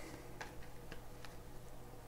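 Faint light clicks or ticks, about two a second and unevenly spaced, over a steady low room hum.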